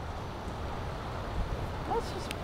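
Steady low rumble of wind on the microphone outdoors, with no distinct events.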